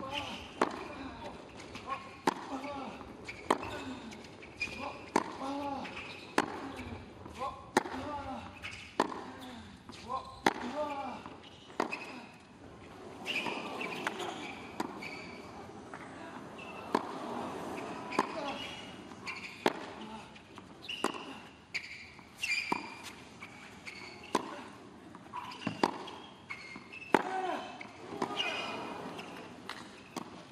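Tennis ball struck back and forth with rackets in a long rally on a hard court, a sharp hit about every one and a half seconds. Short voice sounds and crowd murmur come between the hits.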